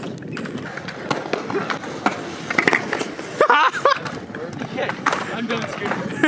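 Small hard wheels rolling on concrete, with scattered clacks and knocks of scooter and skateboard decks hitting the surface. A voice is heard briefly about halfway through.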